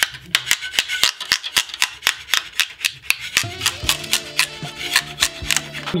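A thin two-layer 3D-printed plastic stencil being peeled off a glass print bed, giving a quick, irregular run of crackling clicks as it comes free. Background music comes in about halfway through.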